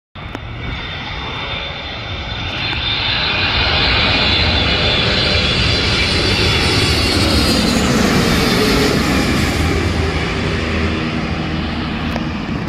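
Boeing 777-300 jet airliner on landing approach passing low overhead: the engine noise builds over the first few seconds into a loud, steady roar with a high whine, and a lower tone slides down in pitch as the plane passes.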